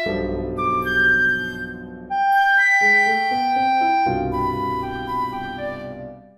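Flute, clarinet and piano playing a lively chamber piece: short high flute figures over sustained clarinet notes, with the piano repeating chords in the low register.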